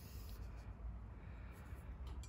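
Faint room tone with a low rumble; no distinct event.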